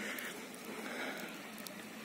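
Faint rustling of willow leaves and twigs as the branch is handled by hand, with a few light ticks.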